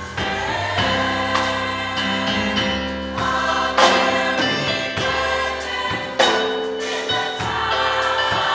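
A gospel choir of women's voices singing sustained chords, with sharp accents every couple of seconds.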